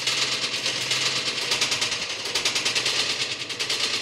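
A rapid, continuous rattle of sharp clicks, many per second. It starts suddenly and holds an even level without a break.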